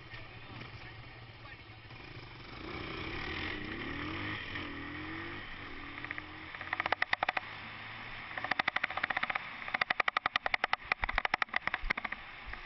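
Dirt bike engine running as the bike pulls away and rides a gravel forest track, heard from a camera mounted on the bike. From about six seconds in, rapid loud crackling comes in bursts over the engine, typical of the camera jolting and rattling over rough ground or wind hitting the microphone.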